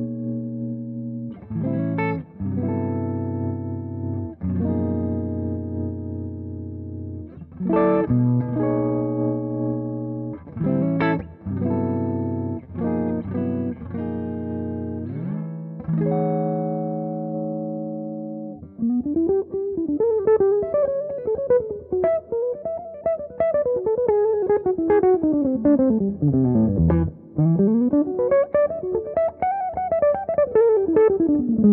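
Eastman thinline semi-hollow electric guitar played through a Hamstead amp: strummed chords left to ring, changing every few seconds, for about the first half, then fast single-note runs sweeping up and down in pitch.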